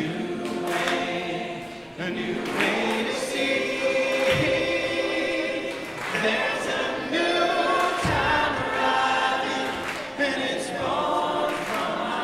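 A large group of mixed voices singing a gospel-style congregational song together in chorus, repeating its refrain.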